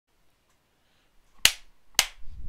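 Two sharp, snapping hits about half a second apart, each with a short ring after it, breaking a silence.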